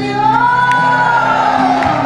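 A woman singing a Bengali film song live into a microphone, holding one long note that rises slightly and falls back, over acoustic guitar accompaniment.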